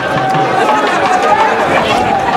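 A dense crowd of many people talking and calling out at once, their voices overlapping into a steady babble.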